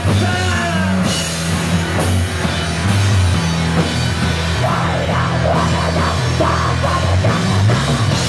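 Live rock band playing: electric guitar, bass guitar and drum kit together, loud and dense, with cymbal crashes about once a second over the first few seconds.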